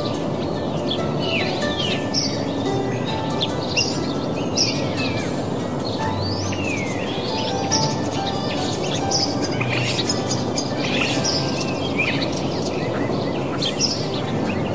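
Birdsong from several birds, many short chirps and whistled glides, over soft instrumental music with sustained notes.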